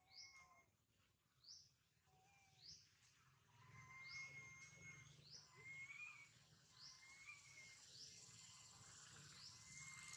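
A bird faintly repeating a short, high, rising chirp about once a second. Thinner steady whistles join in from about a third of the way through.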